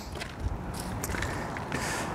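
Faint footsteps on gravel, with a few light scattered clicks over a low steady background noise.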